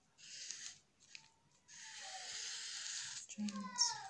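Felt-tip marker drawn across brown pattern paper in two strokes, a short one and then a longer one of about a second and a half, followed by a voice near the end.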